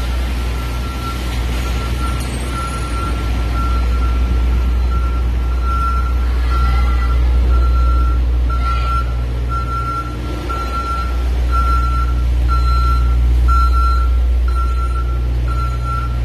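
A large truck's reversing alarm beeping steadily, about once a second, over a continuous low rumble of heavy engines and traffic.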